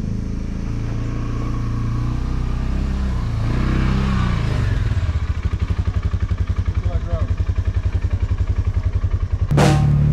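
Polaris Ranger side-by-side UTV engine running with a steady pulsing idle, its pitch swelling briefly about four seconds in as it is revved and pulls off. Drum-led music comes in near the end.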